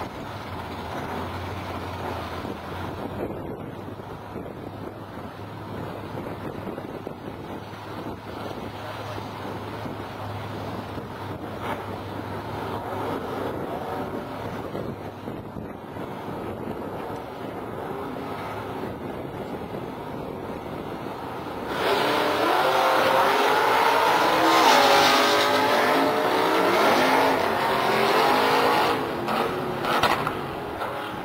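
A first-generation Ford Mustang and a classic Ford pickup running at idle side by side on a drag strip's start line. About two-thirds of the way through they launch at full throttle, a sudden much louder engine noise whose pitch climbs and falls as the cars pull away.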